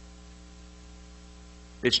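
Steady electrical mains hum, a low buzz with several even overtones, heard in a pause between spoken words. A man's voice starts again just before the end.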